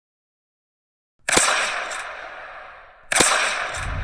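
Silence, then two loud bangs about two seconds apart, each with a long reverberating tail that dies away. Low music starts just before the end.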